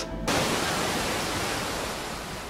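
Ocean surf as recorded on Earth: a steady wash of wave noise that comes in about a quarter second in and eases off slowly.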